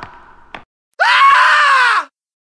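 A person's high-pitched scream, about a second long, starting halfway through and dropping in pitch as it ends; a couple of faint clicks come before it.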